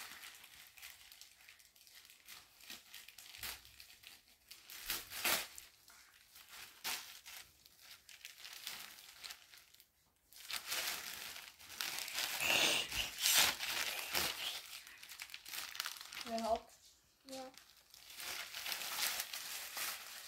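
Plastic poly mailer bag crinkling as it is handled and torn open by hand: scattered rustles at first, then a longer, louder stretch of crinkling and tearing in the second half.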